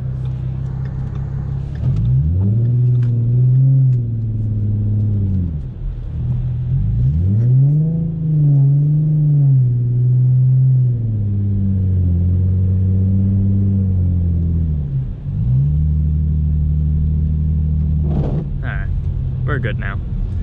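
Ford Mustang engine heard from inside the cabin, loud, revving up and dropping back twice, then holding steady revs with a brief dip, as the car is driven on snow and ice.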